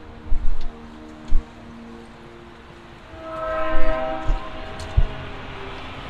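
A horn holding a chord of several steady tones, soft at first, then swelling about three seconds in and fading again. A few short low thumps sound over it.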